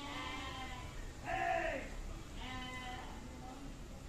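Three short animal calls about a second apart, each falling in pitch.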